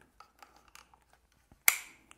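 Handling noise of a camera being picked up and carried: a few faint ticks and rubs, then one sharp click near the end.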